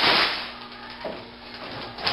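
Plastic waste bag rustling as it is swept away, a brief swish that fades within half a second, followed by quiet handling noise and a faint knock about a second in.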